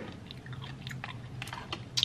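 A person chewing a pickle dipped in ranch, with a few faint crunches and clicks, over a low steady hum.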